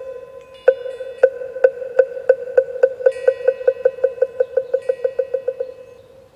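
Moktak (Buddhist wooden fish) struck in a quickening roll. The hollow, pitched strokes start about a second apart and speed up to several a second before stopping near the end. Light chime tinkling comes in twice.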